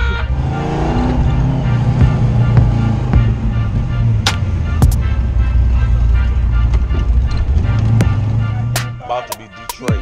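Car engine and exhaust running hard under way, heard from inside the cabin, with hip-hop music playing over it; the engine's low drone falls away about nine seconds in.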